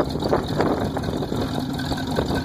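Hot-rod 283 V8 with triple carburetors idling steadily through its open exhaust.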